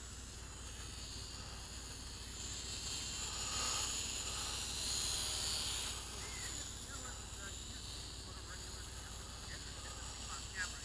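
Small toy quadcopter's propellers and motors buzzing faintly at a distance, swelling for a few seconds in the middle as it banks around and then fading again.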